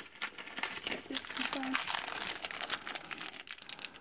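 Crinkly foil blind bag being handled and torn open by hand, a dense run of irregular crackles and rustles.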